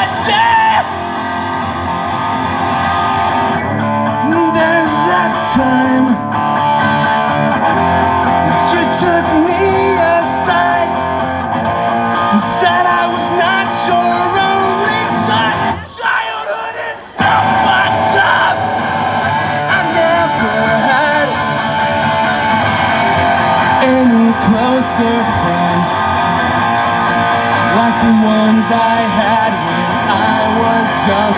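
A man singing loudly while strumming a guitar, a live solo rock song, with a brief break in the playing about sixteen seconds in.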